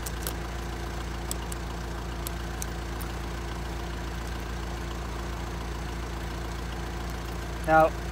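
A van's engine idling steadily, with a few faint clinks of snow chain links being handled in the first three seconds.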